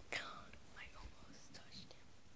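A person whispering briefly and faintly, a breathy voice without clear words.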